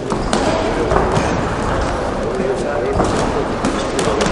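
Shouting voices from the corners and spectators in a large sports hall during a boxing bout, with a few thuds from the boxers' gloves and footwork on the ring.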